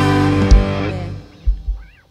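A live rock band with drums, electric guitar and bass ending a song: a final loud accented hit about half a second in, the chord ringing out and dying away, then two last short low hits near the end.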